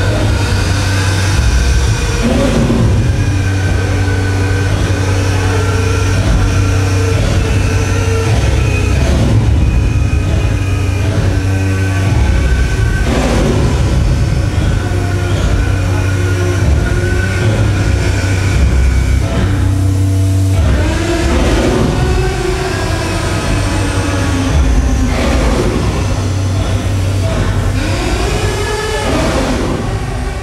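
Loud live experimental noise music: a dense, rumbling wall of sound over a heavy, steady low hum, with sustained tones layered above. About two-thirds of the way through, and again near the end, pitches swoop up and down.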